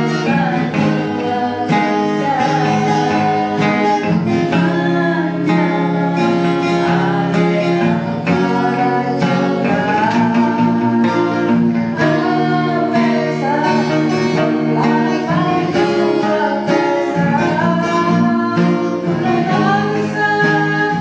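A Bawean-language pop song played by a band: strummed guitar chords with a singer's voice carrying the melody over them.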